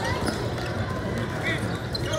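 Basketball bouncing on a hardwood court in a large, echoing hall, over a steady hum of voices, with a short squeak about three-quarters of the way in.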